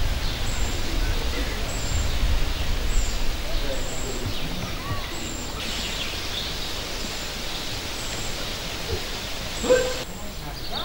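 Outdoor ambience of faint murmuring voices and birds chirping, with one short high note repeating about once a second. Wind rumbles on the microphone during the first few seconds.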